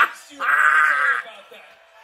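A man's short shout, then a high, drawn-out wail lasting under a second as a pained reaction.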